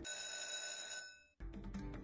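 Online slot game sound effects: a bright, bell-like electronic chime rings and fades out about a second in, and after a brief gap the game's looping music comes back in.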